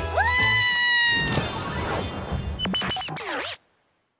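A woman's long, high-pitched scream, rising at the start and held for about a second and a half before fading, over background music; the sound cuts off to silence near the end.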